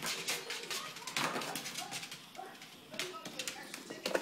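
Small dog making short grumbling growls while pouncing on a toy, with quick clicks and scuffs on a tile floor throughout.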